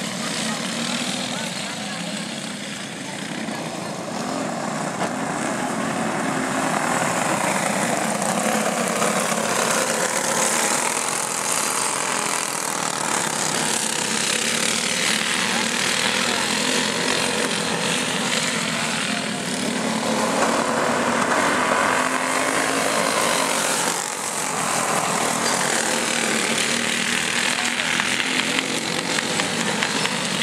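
Several go-kart engines racing on a dirt oval, a continuous buzzing drone that swells and fades in pitch as the pack passes and moves away, several times over.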